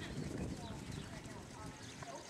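Horse trotting on arena sand, its hoofbeats a soft, even thudding.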